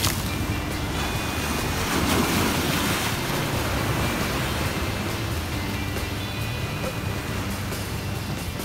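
Ocean surf breaking and washing over a rocky shoreline, with background music playing underneath.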